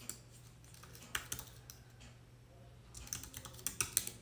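Faint typing on a computer keyboard: a few scattered keystrokes, then a quicker run of keys near the end.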